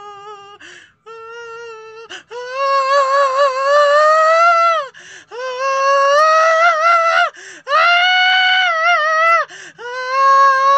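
A man's wordless singing: soft at first, then loud from about two seconds in. He holds long, high open-mouthed notes that climb in pitch, with short gaps between phrases. It is a raw, improvised voicing of fear.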